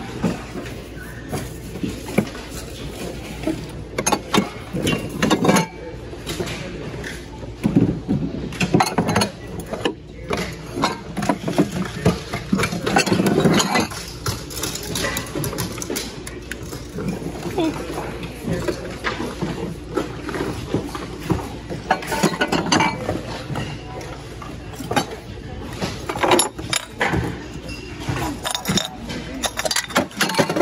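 Hard items knocking and clinking as a hand rummages through a plastic tote of glassware and ceramics, in irregular clatters, with indistinct voices in the background.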